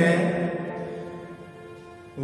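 A man's voice holding the last syllable of a spoken word, drawn out on one pitch and fading away over the next second and a half.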